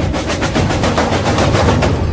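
Fast, even percussion beat, about eight strokes a second, from a drum-led music track.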